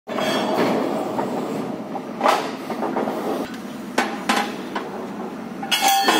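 Sharp metallic knocks, about five in the few seconds, over a steady running machine noise, from steel drill pipes being handled at a borewell drilling rig.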